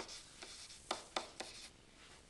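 Faint scratching and tapping of a stylus writing on a tablet, in several short separate strokes.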